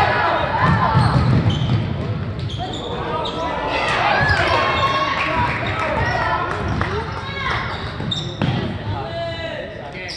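A basketball being dribbled on a hardwood gym floor during play, with players and spectators calling out, echoing in a large gym.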